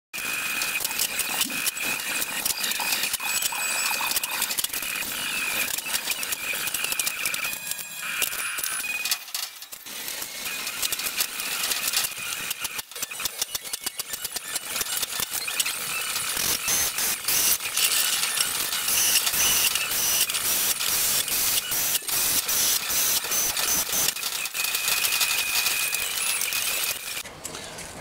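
Continuous clattering and rattling of thin sheet metal being handled and clamped on a steel tool-cabinet bench, with a faint steady high whine through much of it.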